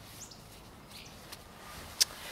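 Quiet outdoor ambience with two or three faint, brief high bird chirps.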